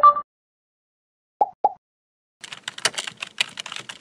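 Keyboard typing sound effect: a fast run of key clicks starting about halfway through. It is preceded by a short chime-like tone at the start and two brief blips a little after a second in.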